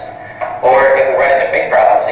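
Video soundtrack playing over loudspeakers: voice with music behind it.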